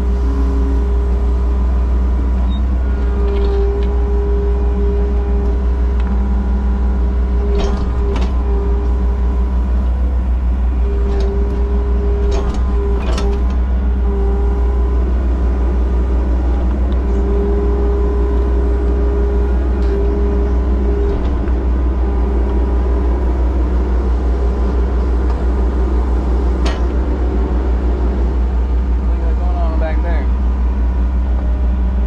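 Excavator digging a trench, heard from inside the cab: the diesel engine runs with a steady low drone under load, a higher whine comes and goes as the hydraulics work the boom and bucket, and a few sharp knocks sound as the bucket strikes gravel and soil.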